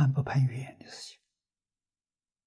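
An elderly man speaking Mandarin, his phrase fading out about a second in, followed by silence.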